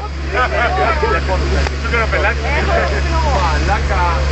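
Several people talking over a car's steady low hum, which does not change.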